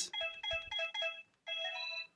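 LG KU1700 mobile phone's keypad tones as its navigation and OK keys are pressed through the menus: about five short beeps in quick succession, then a longer tone of a different pitch near the end.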